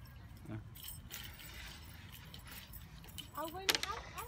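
Plastic water bottle crinkling and clicking as it is handled, with a child's brief rising voice near the end.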